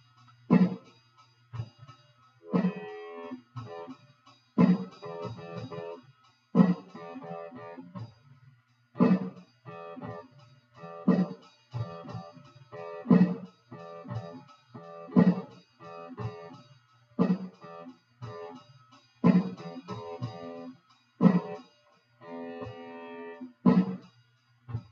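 Electric guitar playing a repeating pattern, about every two seconds a sharp accented hit followed by ringing chord tones, with a low bass note underneath.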